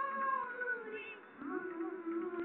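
Recorded music for a classical group dance: a voice sings long, held notes that glide slowly down in pitch.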